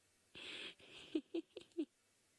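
A person laughing: a breathy snicker, then four short, quick laugh pulses in the second half.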